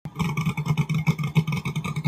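Race car engine running at a rough, lumpy idle with a fast, choppy pulse as the car rolls slowly across the launch area.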